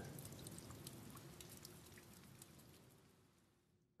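Near silence: faint room tone with a few soft ticks, fading away to silence near the end.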